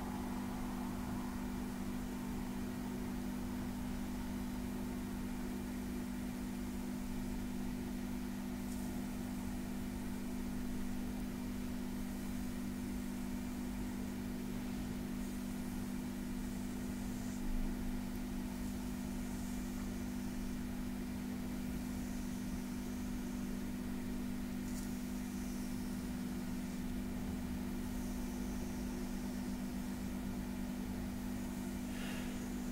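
A steady low electrical-sounding hum, with faint soft brushing now and then as fingertips stroke and trace over the bare skin of a back.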